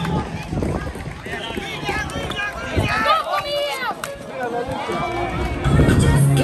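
Young floorball players and spectators shouting and calling out over the play, high-pitched voices overlapping, with a few sharp clacks of sticks and ball and footsteps on the plastic court.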